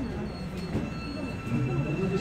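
Busan Metro Line 1 subway train starting to pull out of the station: a steady electric motor whine sets in about a second in over the low rumble of the train.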